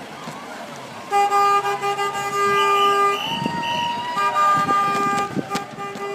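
A horn sounding long, steady blasts: one starts about a second in and lasts about two seconds, and another starts about four seconds in. A higher, wavering tone comes between the two blasts.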